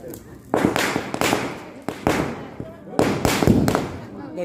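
Firecrackers going off inside a burning effigy: a sharp bang about half a second in, more bangs roughly a second apart, and a quick run of them near the end, each with a short crackle after it.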